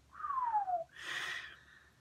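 A short whistle gliding down in pitch, followed by about a second of airy hiss.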